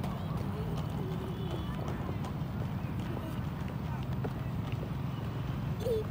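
Roller-skate wheels rolling over rough asphalt: a steady low rumble with a fine clatter.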